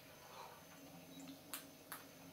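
Near silence with a faint steady hum, broken by two soft clicks in quick succession about a second and a half in: a man swallowing as he drinks from a glass.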